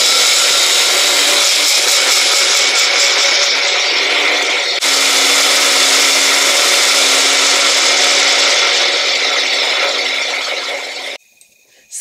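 Elite Cuisine single-serve blender running, chopping raw red onion and dried rose petals with no water added. The loud, steady whir breaks for a moment about five seconds in, then runs on and cuts off about a second before the end.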